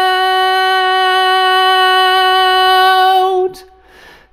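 A solo male voice singing the lead line a cappella, holding one long, steady note on 'out' (of 'Look out') that wavers and stops about three and a half seconds in. A short breath follows.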